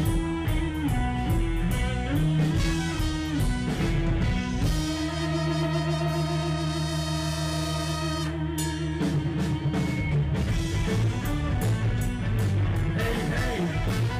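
Live rock band playing: electric guitar, bass and drum kit on a rhythmic riff, breaking about five seconds in to a long held note that wavers, before the riff comes back about ten seconds in.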